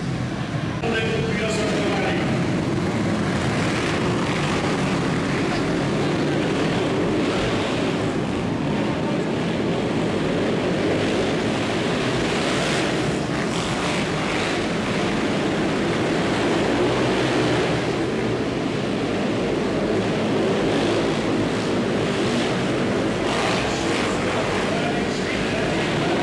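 Several speedway motorcycles running on an ice track, their engines revving unevenly throughout, mixed with voices from the crowd in the hall.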